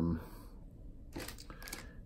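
Faint rustling and a few light clicks of fly-tying materials being handled, most of it about a second and a half in.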